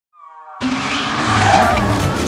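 A car's tyres skidding with its engine running, starting suddenly about half a second in.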